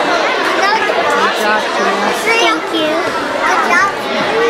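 A crowd of children chattering at once, many high voices overlapping with no one voice standing out.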